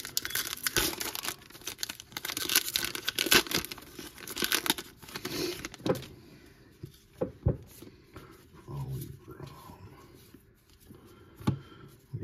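Wrapper of a trading-card pack being torn open and crinkled, a dense run of crackling for about the first six seconds. After that it goes quiet, with a few soft clicks as the cards are handled.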